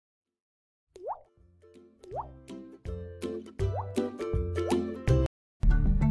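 Countdown intro jingle: electronic music that starts about a second in, with four quick rising 'bloop' sound effects over a beat that grows louder. It breaks off abruptly shortly before the end, and the music picks up again.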